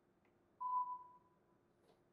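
A single beep from the Dräger Perseus A500 anaesthesia workstation as its rotary knob is pressed to confirm a selection. It is one pure tone that starts about half a second in and fades out over about a second.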